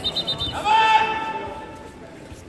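A child's high-pitched karate shout (kiai) held steady for about a second, starting about half a second in, during a kumite exchange.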